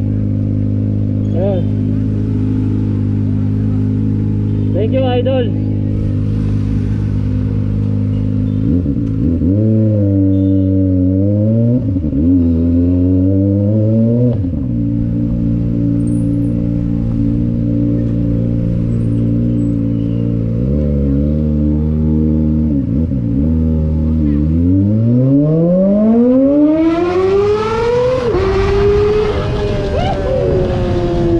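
Kawasaki Ninja sport bike's engine running steadily, then pulling away and changing gear with several dips and climbs in pitch. Near the end it revs up in one long rising climb as it accelerates.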